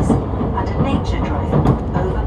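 Running noise inside a JR Central HC85 series hybrid diesel railcar at speed: a steady low rumble of wheels and engine under an onboard announcement voice through the car's speakers.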